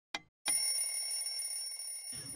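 Logo-reveal sound effect: one last clock-like tick, then about half a second in a bright, high ringing chime that sets in and holds steady.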